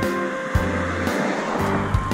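Background music: a music-box arrangement of a slow ballad, its notes striking at a steady pace about twice a second.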